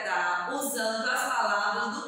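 A woman's voice singing, unaccompanied, in long held notes.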